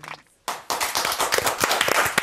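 Audience applauding: many hands clapping at once, starting about half a second in after a brief silence.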